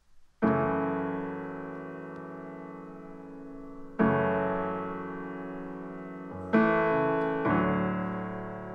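Stage keyboard with a piano sound playing slow chords to open a worship song. A chord is struck about half a second in, another at four seconds, then two more close together near the end, each left ringing to fade.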